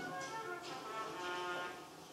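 Brass band playing a quiet passage of held chords, several notes sounding together and shifting a few times.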